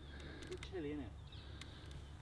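Quiet outdoor background with a few faint clicks and rattles from a three-wheeled golf push trolley being wheeled over grass.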